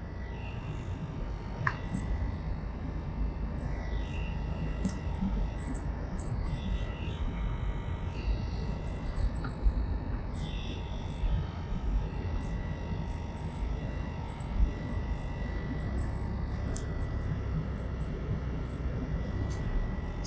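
Steady road and engine rumble inside a moving car, with a faint thin high tone running beneath it.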